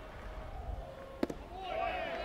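Faint, steady ballpark crowd murmur, broken about a second in by a single sharp pop of a pitched baseball smacking into the catcher's mitt on a called ball.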